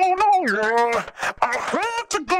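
A sung vocal phrase played back through an overdrive effect whose drive is modulated very fast. The held, gliding notes are broken into a rapid rhythmic, stuttering distortion.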